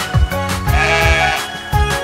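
Upbeat instrumental children's-song music with a steady beat, and a cartoon sheep's bleat, one wavering call lasting under a second, about two-thirds of a second in.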